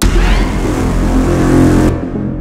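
A dramatic trailer sound effect: a sudden loud hit that holds as a deep rumble with hiss for about two seconds, then drops off, over the film's background music.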